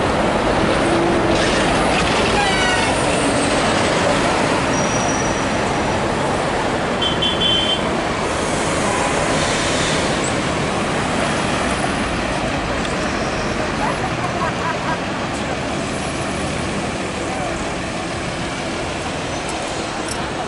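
Busy city street traffic: a steady mix of engine and tyre noise, with a few short high beeps about seven seconds in.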